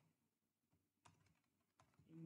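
Near silence with a few very faint computer keyboard keystrokes.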